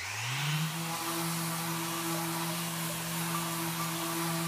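Mirka Deros electric random orbital sander switched on: its hum rises in pitch over the first second, then runs at a steady pitch over an even hiss as it sands wood.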